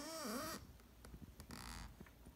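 A woman's short hummed 'mm-hm', its pitch rising and falling twice over about half a second. A soft rustle follows near the end.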